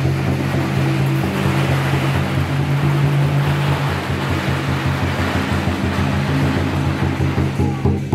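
Traditional Taiwanese temple-procession music: a large barrel drum beats fast, even strokes under a steady noisy wash and held low tones, with the drum hits standing out more clearly near the end.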